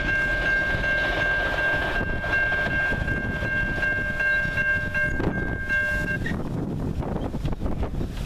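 Freight train of boxcars rolling away, a low rumble of wheels on the rails. A steady high-pitched tone is held over it and stops suddenly about six seconds in.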